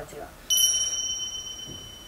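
A bright bell-like ding sound effect struck once about half a second in, its clear high tone ringing and fading away over about a second and a half.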